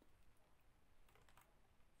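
Near silence: faint room tone with a few soft clicks about a second in.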